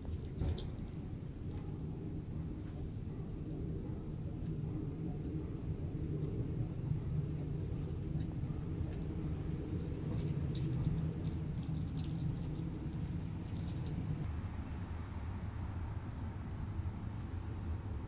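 Low, steady rumble of trucks passing on a nearby road, swelling a little in the middle and easing off, with a few faint clicks.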